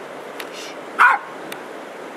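A small terrier barks once, a short sharp bark about a second in, while playing with a stick.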